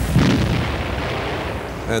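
Rumbling explosions, with one sharp blast just after the start that dies away over the next second or so.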